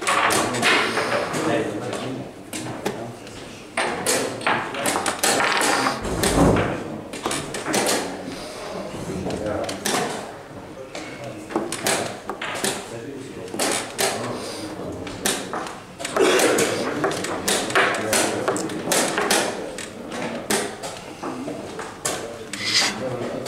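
Wooden chess pieces clacking down on the board and the buttons of a chess clock pressed in quick succession in a blitz game: many sharp clicks, with voices in the background.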